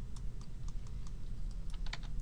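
Scattered light clicks of a computer keyboard and mouse over a steady low hum.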